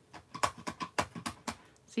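Light clicks and taps of hands handling card stock and a clear acrylic stamp block on a work mat: about ten sharp clicks in quick succession.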